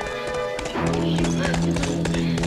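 A horse's hooves clip-clopping as it is ridden, starting well under a second in, over background music with a steady low tone.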